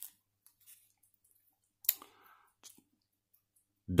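Trading cards being handled by hand: a sharp tap about two seconds in, followed by a short rustle, with a few faint clicks around it.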